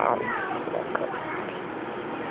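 A short, high-pitched cry at the start whose pitch falls away over about half a second. Fainter fragments of the same kind follow around a second in, over a steady background hiss.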